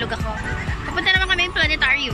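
A high-pitched voice in two short bursts in the second half, over steady background music.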